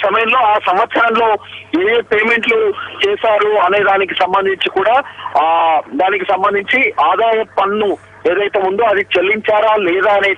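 Speech only: a reporter talking continuously in Telugu over a telephone line, the voice thin and cut off above the phone band.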